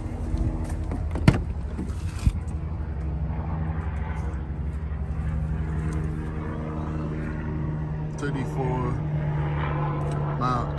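A steady low engine hum, with two sharp clicks about a second apart near the start, typical of a pickup door latch.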